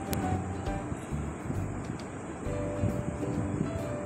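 Soft background music over a low, steady rumble, with a spatula stirring thick milk pudding in a steel pan and faint scrapes.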